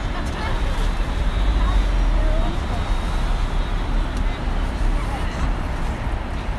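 Road traffic: cars and taxis idling and moving in slow traffic close by, a steady low rumble. Indistinct voices of people walking are mixed in.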